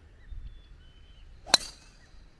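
A driver striking a golf ball off the tee: one sharp crack about one and a half seconds in.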